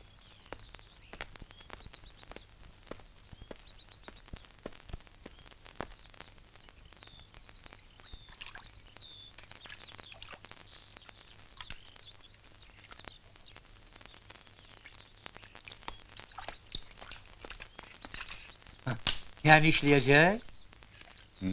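Small birds chirping and twittering faintly and repeatedly, with scattered light clicks.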